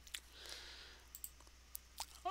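Near silence broken by about four faint, sharp clicks spread across two seconds, the sound of someone working a computer's mouse or keys.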